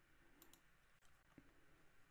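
Near silence with a few faint computer mouse clicks: two quick ones about half a second in and another near one and a half seconds.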